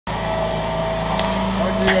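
A vehicle engine idling steadily, with a couple of short clicks near the end.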